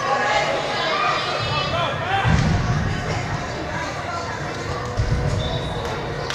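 Players' and spectators' voices calling out across a large indoor soccer arena, with dull thuds of the ball being kicked about two seconds in and again near five seconds.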